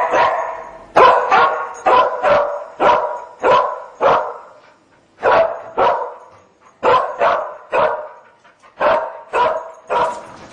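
English springer spaniel cadaver dog barking repeatedly, a sharp bark about every half second in short runs with a couple of brief pauses. This is the dog's trained bark alert, signalling that it has picked up the odour of human decomposition at the closet.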